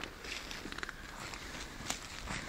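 Quiet handling noises: rustles and small clicks as an angler works a lure out of a large pike's mouth by hand with a metal tool, with one sharper click near the end.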